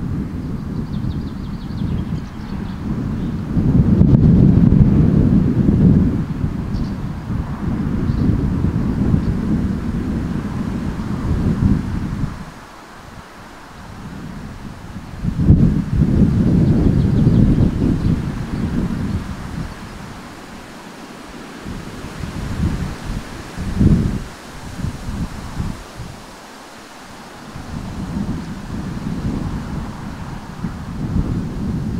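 Wind buffeting the microphone in gusts, a low rumble that swells strongly twice and drops to quieter lulls in between.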